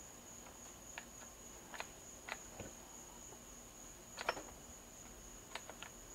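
Faint metallic clicks of a freshly reassembled South Bend lathe apron's feed selector and clutch levers being worked by hand, several small clicks with the loudest about four seconds in. A steady high-pitched whine sits underneath.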